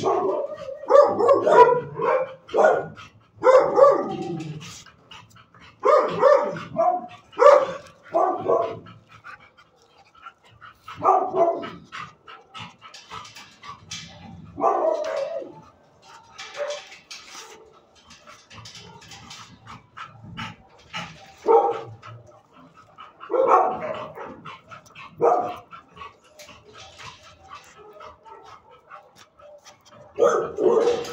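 A dog barking, in quick runs of barks over the first nine seconds or so, then single barks every few seconds.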